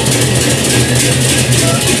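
Gendang beleq ensemble playing: large double-headed barrel drums beaten with sticks amid dense, rapid cymbal clashing, over a steady low hum.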